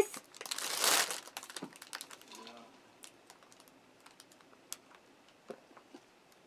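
Clear plastic bag crinkling as it is handled, loudest for about a second near the start, then thinning to scattered small crackles and clicks.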